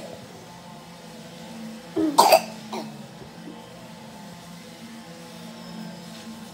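A person close to the microphone gives a short burst of coughing about two seconds in, over a steady low hum.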